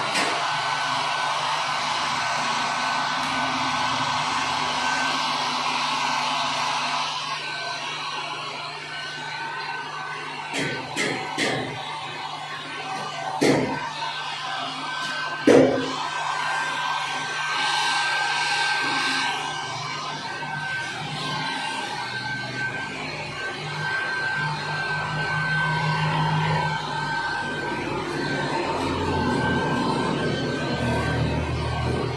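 Background music over a small handheld hair dryer blowing steadily, its motor giving a thin, steady whine. Two sharp knocks come about halfway through.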